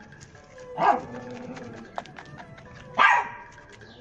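A dog barking twice, two short barks about two seconds apart, over faint background music.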